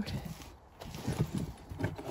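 Potatoes being handled in a black plastic cart bed, giving a few soft, irregular knocks as they bump each other and the plastic. The knocks start about a second in.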